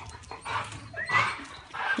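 American Staffordshire terrier giving a few short whines, one rising in pitch about a second in.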